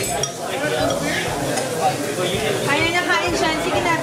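Busy restaurant table: voices talking while metal spoons and chopsticks clink against dishes and bowls.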